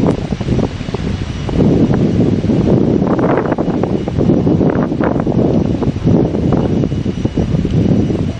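Wind blowing on the camera microphone: a loud, uneven noise that rises and falls, heaviest in the low end.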